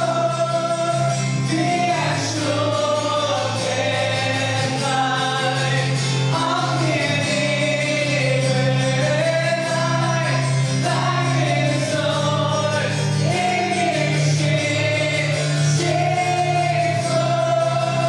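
Live worship song: a male lead singer with acoustic guitar accompaniment, and other voices singing along, in a slow, sustained melody.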